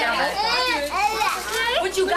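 Several children talking and calling out at once, high-pitched voices overlapping into a continuous chatter with no clear words.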